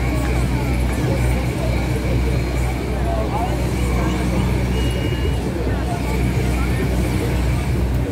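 Busy city street ambience: indistinct chatter from a crowd of people mixed with passing car traffic and a constant low rumble. A steady high-pitched tone runs underneath.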